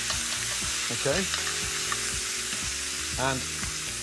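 Chicken pieces and pancetta sizzling steadily in hot olive oil in a pan, browning skin side down to take on colour.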